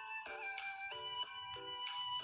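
Background music: a bright melody of short repeated notes, about three a second, over held high tones.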